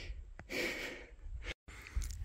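A man drawing a breath between sentences, lasting about half a second, over a steady low rumble of wind on the microphone. The sound drops out completely for a moment a little past halfway.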